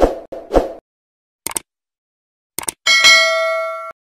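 Logo sting sound effect: two short hits, two brief clicks, then a bright ringing ding of several tones that rings for about a second and cuts off suddenly.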